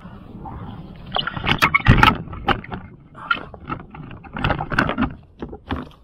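Irregular clunks and scrapes from gear being handled in a kayak cockpit holding water: a neoprene spray skirt being pulled toward the coaming and a hand bilge pump being set in place. The loudest knock comes about two seconds in.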